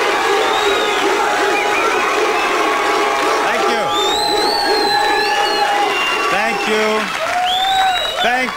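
Studio audience cheering and applauding, steady and loud, with many voices shouting at once and high shrieks about four seconds in and again near the end.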